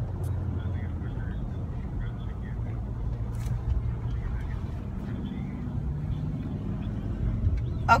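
Steady low rumble of a car heard from inside the cabin, engine and road noise, with faint voices underneath.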